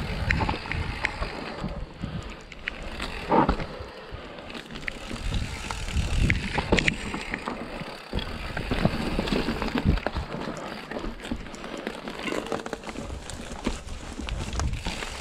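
Mountain bike rolling down rocky, rooty dirt singletrack: tyres crunching over rock and roots, with the bike rattling and knocking at each bump. Several harder knocks stand out, the loudest a few seconds in.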